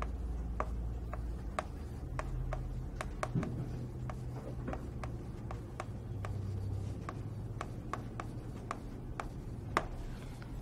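Writing by hand: a string of sharp, irregular taps and scratches as the words are put down, with one louder tap near the end.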